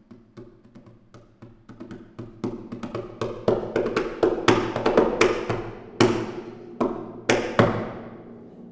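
Concert harp playing a passage of plucked notes, each ringing on, starting faint and growing louder.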